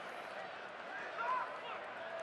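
Ballpark crowd noise: a steady hum of a stadium crowd, with a few faint distant voices about a second in.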